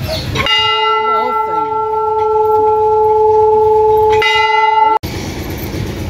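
Large hanging temple bell struck twice. The first strike, about half a second in, rings out steadily for nearly four seconds; a second strike follows, and the ringing cuts off abruptly about a second later.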